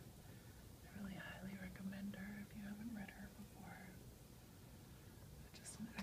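A woman whispering and talking softly, close to the microphone, for a few seconds, then a quieter pause.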